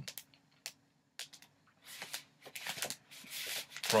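Cardboard LP record jacket being handled: a few light clicks and taps in the first second or so, then soft rustling and rubbing of the sleeve toward the end.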